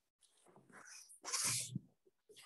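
A person sneezing: a short breathy build-up, then one loud, noisy burst about a second and a half in.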